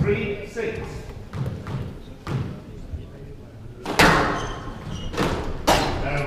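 Squash ball being hit in a rally: three sharp cracks of racket and ball off the court walls, the first about four seconds in and the last two close together, each ringing on briefly. Before the hits, spectators murmur in the background.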